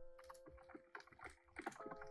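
Faint typing on a computer keyboard, a quick irregular run of keystrokes, over soft background music with long held notes.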